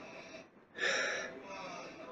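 A man sipping bourbon from a tasting glass, with one short, breathy rush of air through the mouth about a second in.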